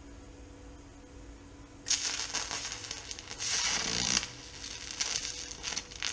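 A welding arc on thin aluminum, struck about two seconds in and crackling and hissing unevenly for about four seconds before cutting off. The aluminum melts quickly, quicker than steel, at a heat the welders think may be too high.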